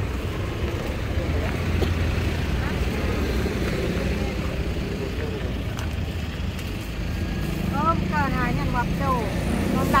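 Busy roadside market ambience: a steady low rumble of traffic and engines, with people talking in the background, voices coming through more clearly near the end.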